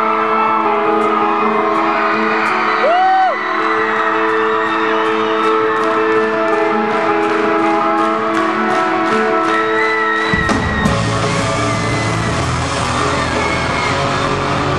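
Live rock band intro: a held chord sustains under steady sharp clicks about twice a second, with a short whoop from the crowd about three seconds in. About ten seconds in, the full band comes in with drums and bass.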